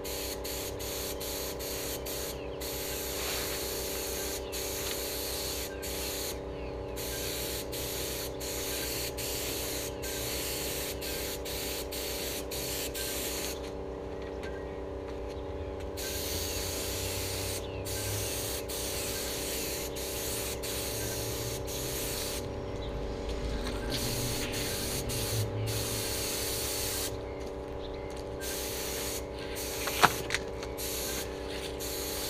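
HVLP spray gun hissing as compressed air atomises paint, in passes broken by pauses where the trigger is let go, the longest about two seconds around the middle. A steady low hum runs underneath.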